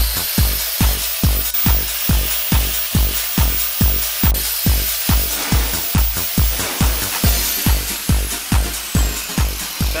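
Electronic dance music with a steady kick drum at about two beats a second, and a high sweep falling in pitch over the second half.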